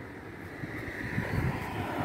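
Traffic rumble from a city street, with no clear tones, growing slowly louder as a vehicle approaches.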